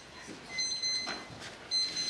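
Electronic timer alarm beeping: a high-pitched beep about half a second long, repeating roughly once a second, signalling that the debater's prep time has run out.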